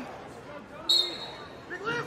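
A wrestling shoe squeaks on the mat once, a short, high squeal about a second in, as the wrestlers scramble.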